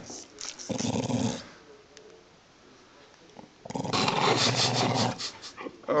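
A Jack Russell-type terrier growls twice, in two rough bursts about a second in and again near the end, while its front paw is held for a nail trim. The growls are a warning at having its paw handled.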